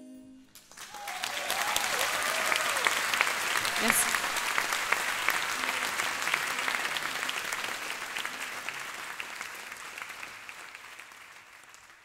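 Concert audience applauding and cheering as the song ends, with whoops and a shrill whistle about four seconds in. The applause swells within a second of the last note and then slowly fades away.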